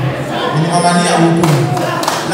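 A man's voice speaking loudly through a handheld microphone, in long, drawn-out phrases.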